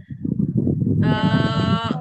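A loud, bleat-like vocal noise: a rough low buzz, then a held buzzy tone at one steady pitch for about a second.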